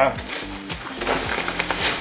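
Plastic bubble wrap and packaging crinkling and rustling as a box is pulled free, with a sharp crackle near the end, over steady background music.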